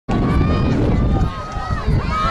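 Spectators' voices calling out and talking, no words clear, over a steady low rumble.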